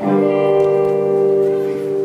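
Liturgical church music: one long chord held steady in pitch.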